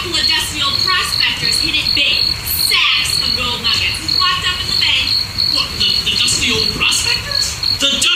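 A steady, high, pulsing chirp like crickets, with indistinct voices over it.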